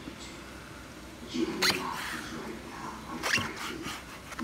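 A kitchen knife slicing through soft, wet food on a plastic cutting board, with two sharp knocks of the blade meeting the board, about a second and a half in and again near the end.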